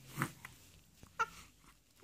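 Two-month-old baby cooing: two short squealing vocal sounds about a second apart.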